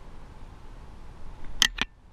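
Handling noise: two quick, sharp knocks close together near the end, over a faint steady outdoor hiss.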